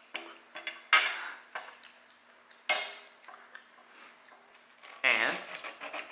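Metal knives and forks clinking and scraping on plates as food is cut, with a few sharp clinks, the loudest about a second in and near three seconds. A short vocal sound comes near the end.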